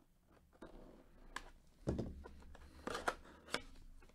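Cardboard baseball box being opened by gloved hands: scraping and rustling, a dull thump about two seconds in, and a few sharp snaps of the cardboard near the end as a flap is pulled open.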